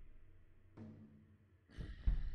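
Sparse suspense score in a standoff: a deep drum hit dies away, then a short breath-like sound comes about three-quarters of a second in. A rising swell near the end builds toward the next heavy drum hit.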